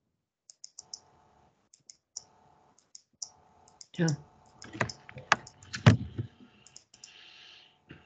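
Computer keyboard and mouse clicking: a scatter of light clicks, then a few louder clicks and knocks about five to six seconds in.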